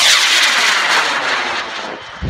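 A CTI J285 solid-propellant rocket motor firing at liftoff of a high-power rocket: a loud rushing roar that fades steadily as the rocket climbs away.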